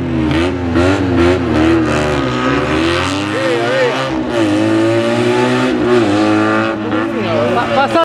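Classic Fiat 500's two-cylinder engine revving hard, its pitch rising and falling over and over as the car is thrown through a slalom.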